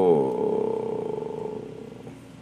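A man's drawn-out hesitation sound: a held "so" that drops in pitch and trails off into a rough, creaky hum, fading out over nearly two seconds.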